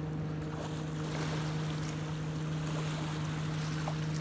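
Small waves washing onto a sandy lakeshore over a steady low hum.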